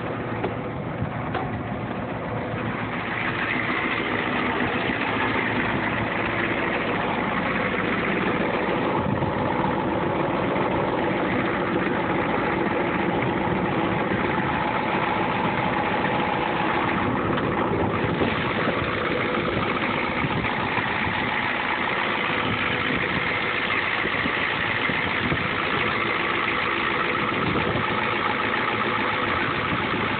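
A 1986 Ford F-350's naturally aspirated 6.9L IDI V8 diesel idling steadily, a little louder from a few seconds in.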